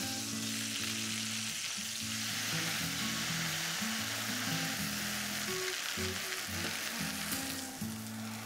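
Stuffed pork chops frying in olive oil and butter in an enameled cast-iron casserole: a steady sizzling hiss.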